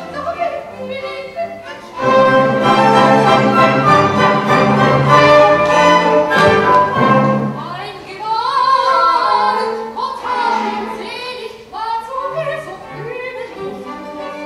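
Orchestra and operatic singing. The orchestra plays loud and full from about two seconds in, and from about eight seconds a solo voice sings with wide vibrato over lighter accompaniment.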